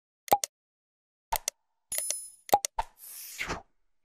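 Subscribe-animation sound effects: a few sharp click-pops, a short bell ding about two seconds in, a quick run of clicks, and a swoosh near the end.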